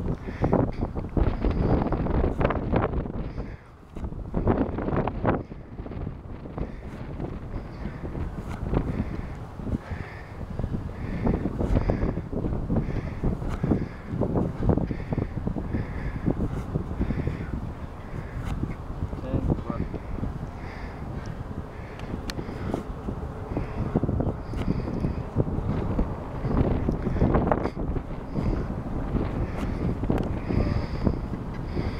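Wind buffeting the microphone with a dense low rumble, and a faint higher sound repeating about every second and a half.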